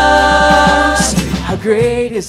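Live worship band music with several voices: a long chord is held, with a steady bass underneath, until about a second in, and then a new sung line begins near the end.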